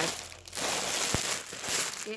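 Clear plastic bag crinkling loudly as it is handled right next to the microphone, with one short bump about a second in.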